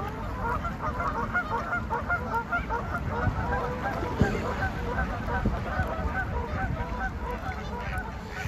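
A flock of waterbirds calling, many short calls overlapping one another without a break, over a low wind rumble on the microphone.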